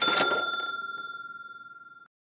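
A single bright bell-like ding sound effect, struck once and ringing on one clear high tone that fades away over about two seconds before cutting off.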